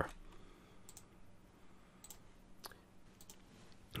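About four faint, isolated clicks from computer keys and mouse as the edited code is saved and the browser page reloaded, over low room tone.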